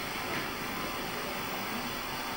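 Steady background hiss of room tone in a pause between sentences of an amplified speech.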